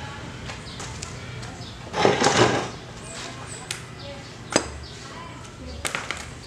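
Motorcycle rear wheel being moved into place by hand beside the swingarm. About two seconds in comes a loud scraping rustle lasting under a second, and later two sharp clinks, the second near the end.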